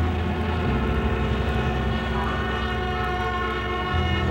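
A steady held chord of many sustained tones over a low hum, typical of a droning background music bed. The bass shifts slightly about a second in.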